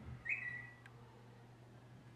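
Smartphone message alert: one short high tone of about half a second, ending in a click.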